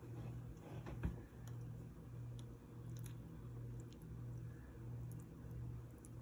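Soft scraping and squishing of a spoon and then a knife spreading cottage cheese on a slice of bread, with a short tap about a second in. Under it runs a low hum that swells and fades a little more than once a second.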